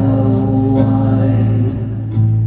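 Live music: electric guitar holding a sustained low chord under a singing voice, the chord changing near the end.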